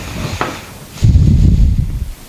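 Hands working a plastic snowmobile goggle frame and its short strap as the strap is pushed into the frame's outrigger: a light click, then about a second in a loud low rubbing rumble of handling noise.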